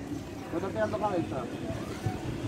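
Background voices talking quietly, with a steady low rumble underneath.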